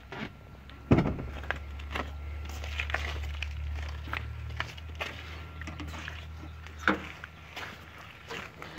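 Scattered light knocks and rustles of people moving about and handling parts inside an old car, over a low steady hum.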